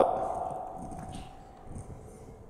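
A man's spoken word ending and fading out over about a second and a half, then quiet room noise with a faint click about a second in.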